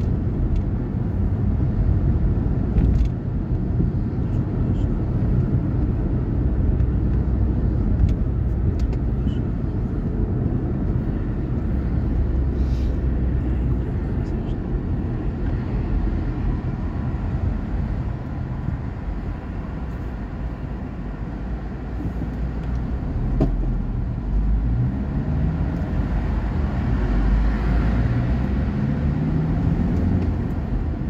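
Engine and road noise inside a moving car: a steady low drone of engine and tyres. The engine's pitch rises near the end as the car picks up speed.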